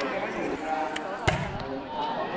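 A volleyball struck once with a sharp smack about a second in, a hand serving the ball, over the voices of the crowd.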